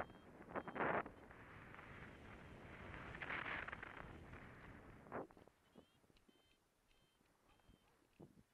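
Wind rushing over a camera microphone as a paraglider glides in low to land, swelling and easing in gusts. It drops away after about five seconds as the pilot slows to a stop, leaving faint ticks and a few short high chirps.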